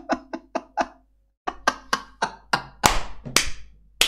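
A man laughing in short bursts, then, after a brief cut-out in the audio, a quick run of sharp hand claps, about five a second, the last ones loudest.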